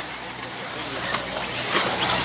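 1/8-scale electric RC buggies running over a dirt track, their motors and tyres making a steady hiss that builds toward the end as the cars come closer.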